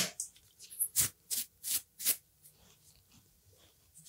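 A quick run of about eight short rustles and clicks over the first two seconds, then only a few faint ticks: hands working through a full beard and handling a small comb, close to a clip-on microphone.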